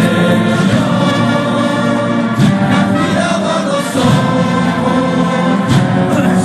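Choral music: a choir singing sustained, held chords.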